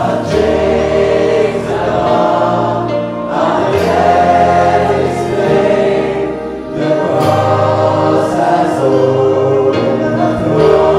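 A church congregation sings a worship song together with a band accompanying them, the singing filling the room over sustained low instrumental notes.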